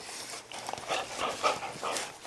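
A puppy and an older dog play-fighting at close range, their breathing and mouthing noises coming in quick, irregular bursts.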